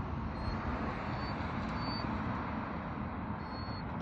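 Steady road-traffic noise with a low rumble. Over it a poodle gives a few faint, short, high-pitched whines.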